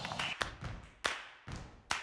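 Three sharp percussive taps, evenly spaced a little under a second apart, each with a short ringing tail: the opening beats of a music track.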